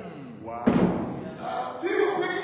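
A single hard thump, the loudest sound here, about two-thirds of a second in, amid a man's raised preaching voice that breaks off and then resumes.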